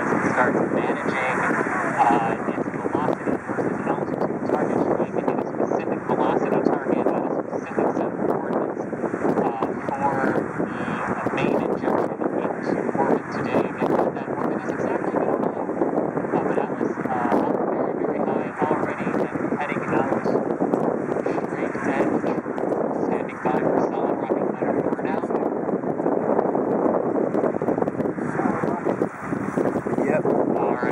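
Indistinct, muffled speech running on continuously, mixed with steady rushing wind noise on the microphone.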